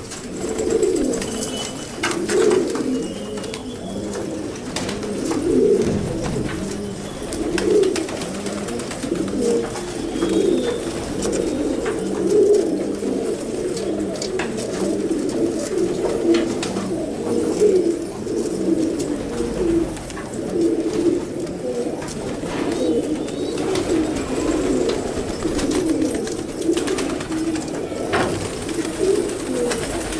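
A flock of fancy pigeons cooing in a continuous, overlapping murmur, with occasional faint clicks.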